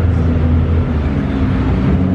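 A car engine idling close by: a steady, low drone.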